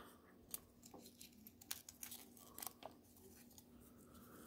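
Faint crackles and small tearing sounds of a little folded paper envelope being picked open and unfolded by fingers, a few soft crackles spread over the seconds.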